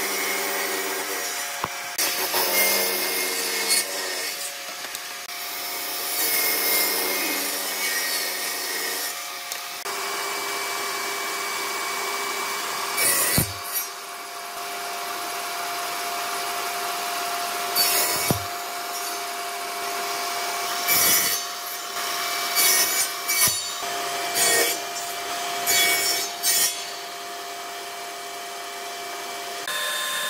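Table saw running with a steady motor whine, its blade cutting through wooden boards in a series of short passes, each cut a brief loud burst.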